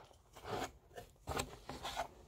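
Paper and fabric rustling and rubbing in several short bursts as a spoiler sheet and a folded T-shirt are handled and lifted out of a subscription box.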